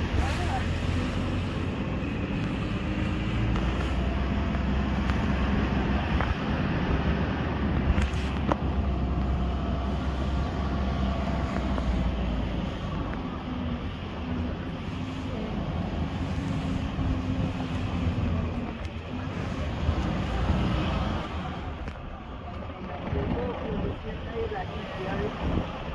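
Engine and low rumble of an open-sided off-road vehicle driving along steadily, with a single sharp knock about eight seconds in.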